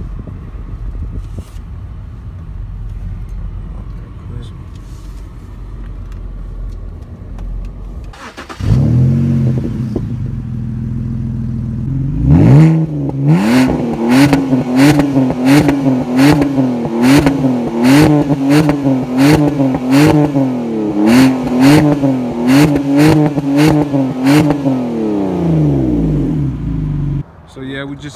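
Car engine revved again and again: its pitch rises and falls about one and a half times a second, with a sharp crack on each rev. It then winds down and stops shortly before the end.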